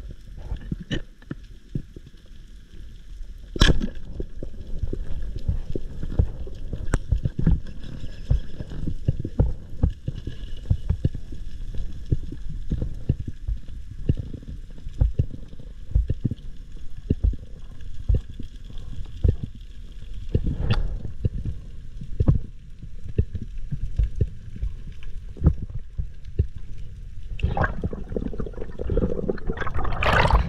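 Water sloshing and gurgling against the microphone, with a dense run of irregular low knocks and a few sharper clicks.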